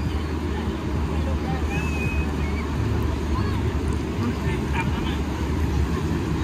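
Steady low rumble of wind on the microphone at the beach, mixed with the wash of surf, with faint distant voices of beachgoers and children.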